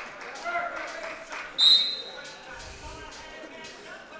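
Referee's whistle, one short sharp blast about one and a half seconds in, restarting the wrestling bout from the neutral position, with voices in the hall behind it.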